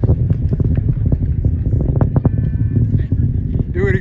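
Space Launch System rocket climbing away after launch, heard from about three miles: a deep, steady rumble with crackling through it. A person's wavering shout comes in near the end.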